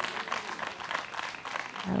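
Spectators applauding, a dense run of hand claps.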